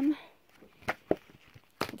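Books being handled: a spiral-bound journal set aside and another book picked up, giving soft rustles and a few short taps, the sharpest a little after a second in.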